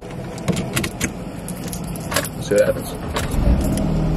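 Clicks and handling noises inside a Jeep's cabin. Near the end the Jeep's engine comes up to a steady low rumble, which the owner says sounds bad, with a whistle.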